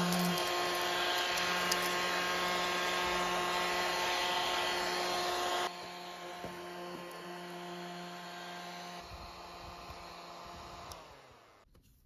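Small battery-powered desktop vacuum running, its motor giving a steady whine over a hiss of air as it is pushed over a wooden desk sweeping up eraser shavings. The sound suddenly gets quieter a little before halfway, and the motor winds down and stops shortly before the end.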